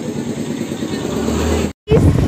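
Indistinct background voices over a low rumble that grows louder in the second half, cut off abruptly near the end.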